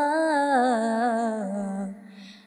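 A woman's unaccompanied voice reciting a Muharram salaam holds the last vowel of a line. The long held note slides slowly down in pitch and fades out near the end.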